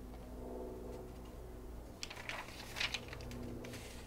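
Magazine pages turned by hand: a short rustle of paper about halfway through, over a faint steady low hum.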